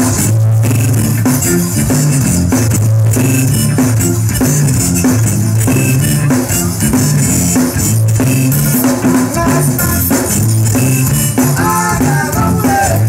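Live zydeco band playing an instrumental stretch: piano accordion, electric guitar, bass and drum kit, with a steady stepping bass line and busy, bright percussion.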